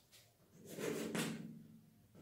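Chalk writing on a blackboard: a run of short scratching, tapping strokes lasting about a second as a letter is written.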